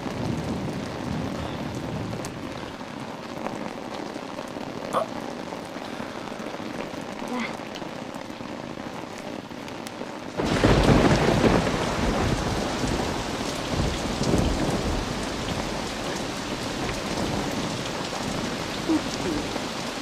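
Heavy rain falling steadily, softer at first. About ten seconds in it turns abruptly louder, with a low rumble of thunder.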